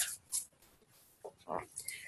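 Quiet pause with a few faint, short breath and mouth sounds from a woman, one with a slight voice to it, about one and a half seconds in.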